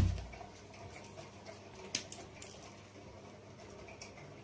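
A single sharp thump at the start, then quiet room tone with one faint click about two seconds in.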